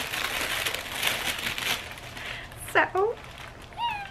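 Tissue paper rustling and crinkling as it is pulled back from a shoe box. Near the end, two short high-pitched voice sounds, a squeal and a laugh.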